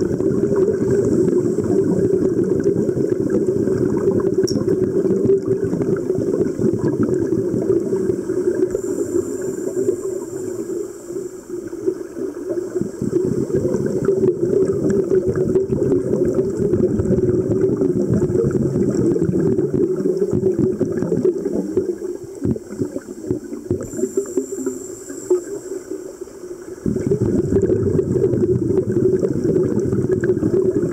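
Muffled underwater gurgling and rumbling of scuba divers' exhaled regulator bubbles, heard through an underwater camera housing. It thins out briefly about a third of the way in and for several seconds near the end, then comes back suddenly.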